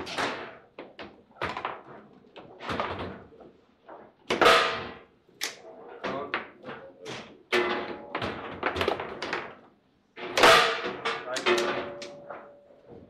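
Foosball table in play: a rapid, irregular series of sharp knocks and clacks as the ball is struck by the rod figures and rebounds off the table walls, each hit ringing briefly. The loudest hits come about four seconds in and again about ten seconds in, just after a short lull, and a goal is scored during the run.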